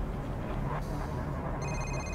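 A flip phone's electronic ringtone starts near the end, a short high ring of steady tones: an incoming call. It sounds over a low steady rumble.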